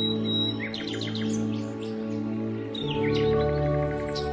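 Calm, slow music with long held chords that change a little before three seconds in, under birds chirping in quick series about a second in and again near three seconds.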